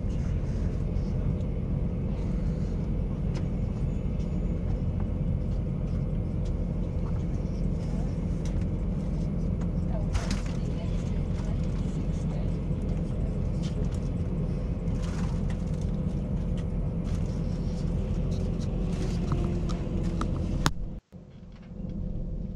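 Steady rumble of a passing passenger train, the Spirit of the Outback's carriages rolling by on the adjacent track, heard from inside a stationary train with a few light clicks. It cuts off abruptly about a second before the end.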